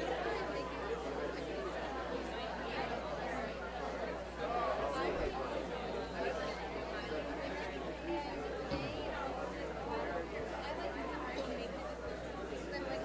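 A room full of people talking at once in small groups: steady overlapping conversation, with no single voice standing out.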